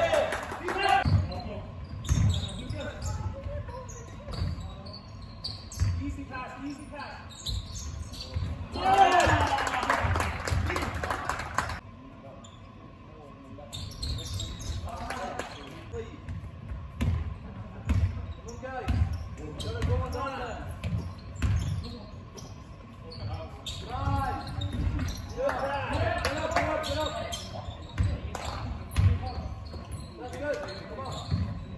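A basketball being dribbled on a sports-hall floor during a game, as irregular thumps that echo around the hall. Players and onlookers shout over it, loudest from about nine to twelve seconds in and again near twenty-five seconds.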